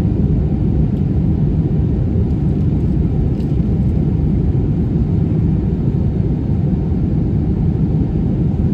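Steady, deep cabin rumble of an Airbus A320-family jet in flight, engine noise and airflow heard from a window seat over the wing.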